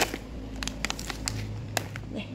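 A clear plastic bag packed with dried root slices being handled, the plastic crinkling in a quick run of sharp crackles.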